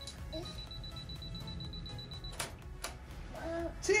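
A camera's high, steady beep for about two seconds, then two sharp shutter clicks a moment apart, over soft background music. A voice starts saying 'cheese' near the end.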